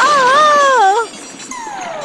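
A cartoon character's high, wavering wail for about the first second. About half a second later a smooth descending glide sound effect begins and falls steadily in pitch.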